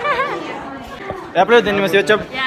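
Speech only: young people chattering, with a short burst of voices at the start and another in the second half.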